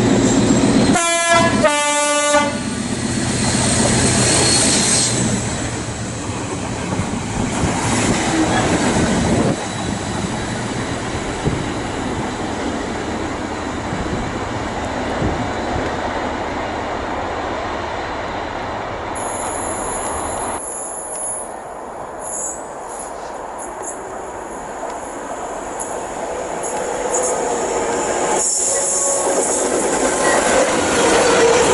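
Class 56 diesel locomotive sounding two short horn blasts about one and two seconds in. Then a steady rumble as diesel-hauled freight locomotives and tank wagons pass, with the wheels clicking over rail joints and a high-pitched squeal in the second half.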